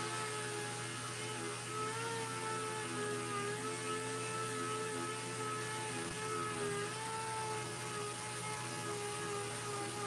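Air-powered dual-action sander running steadily with a scuff pad, its whine wavering slightly in pitch as the pad is worked over a glossy motorcycle fairing, with a steady hiss underneath. It is scuffing the gloss so that primer will stick.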